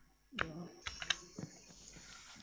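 A handful of irregular clicks of keys on a computer keyboard.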